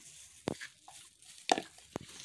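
Three short, sharp knocks about half a second, a second and a half and two seconds in, the middle one the loudest.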